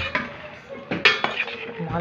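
A metal spoon stirring chopped bottle gourd in a cooking pot. It scrapes and clinks against the pot several times.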